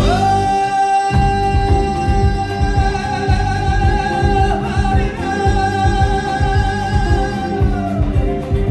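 Georgian folk band playing live: one voice holds a single long high note for nearly eight seconds, wavering slightly midway and breaking off near the end, over a steady drum beat and sustained lower accompaniment.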